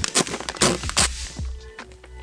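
Clear plastic tackle boxes being handled: a handful of sharp plastic clicks and rustles in the first second, then quieter handling, over background music.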